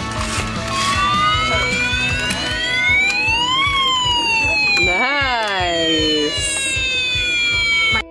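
Toy fire truck's electronic siren wailing: a long tone that rises for about three seconds and then slowly falls, with a second, quicker rising and falling wail overlapping about five seconds in. Background music with a steady beat runs underneath.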